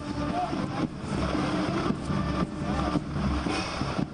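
A convoy of black Toyota SUVs driving past on a wet road: steady engine and road noise, with voices faint in the background.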